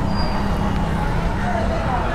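A scooter engine idling steadily amid street traffic noise, with indistinct voices nearby.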